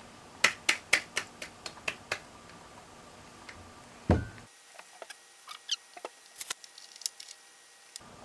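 Table knife cutting a sandwich on a granite countertop: a quick run of sharp clicks as the blade meets the stone in the first couple of seconds, a heavier knock about four seconds in, then fainter clicks and a few light squeaks.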